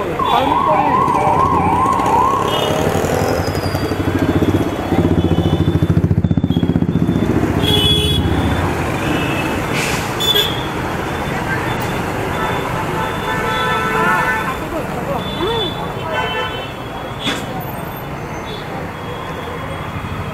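Busy street traffic. A warbling, siren-like vehicle horn sounds rapidly up and down for about two seconds at the start, and a motor vehicle engine runs loudly close by from about five to eight seconds in.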